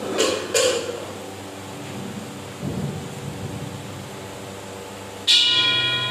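Ritual percussion of a chanting ceremony: three quick struck knocks near the start, then about five seconds in a bell struck once, ringing on with several clear, steady tones.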